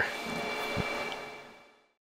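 Steady hiss and hum of running computer fans, with faint thin whining tones, fading out to silence near the end. A soft knock comes about a second in.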